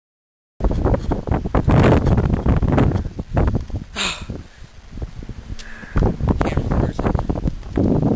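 Gusty wind buffeting an outdoor camera microphone, a loud, uneven rumbling rush that swells and dips, cutting in abruptly about half a second in.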